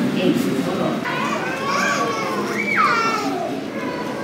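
Background chatter of waiting passengers with children's voices; a child's high-pitched voice rises and then falls away about two and a half seconds in.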